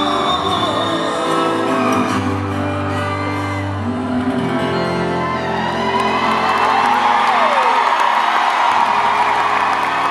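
Live acoustic set in an arena: acoustic guitars and a woman's singing voice draw to a close while the crowd cheers and whoops, the cheering swelling over the music in the second half.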